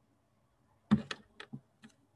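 Computer keyboard keys pressed about five times in quick succession, starting about a second in after near silence.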